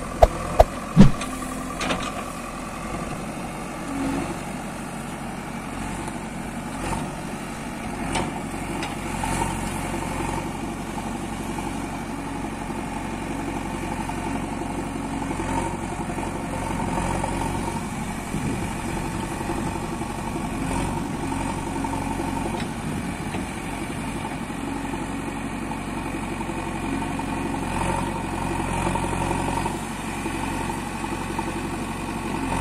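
JCB backhoe loader's diesel engine running steadily while the backhoe digs, the note rising and easing a little as the hydraulics work. A few sharp clicks in the first second.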